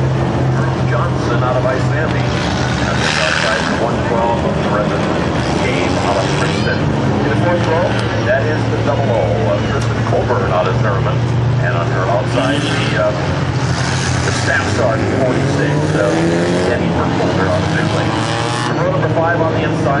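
Hornet-class dirt-track race cars, small four-cylinder front-wheel-drive compacts, running at low pace in a lineup parade lap. Their engines make a steady low drone, and a public-address announcer's voice carries over it.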